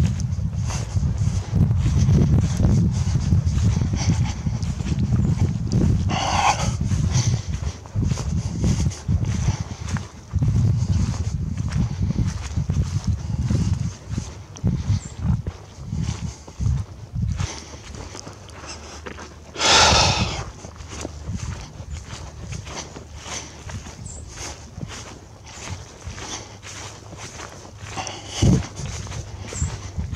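Footsteps of a person walking over dry grass and a trail, with wind rumbling on the microphone through the first half. There is a brief loud rustle about two-thirds of the way through and a single thump near the end.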